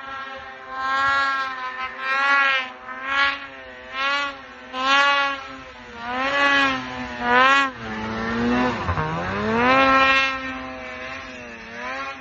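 Polaris snowmobile engine revving hard in repeated surges, about one a second, as the sled churns through deep powder; near nine seconds in the pitch drops sharply, then climbs back up as it revs again.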